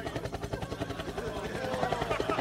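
Helicopter rotor chopping in a steady rapid beat.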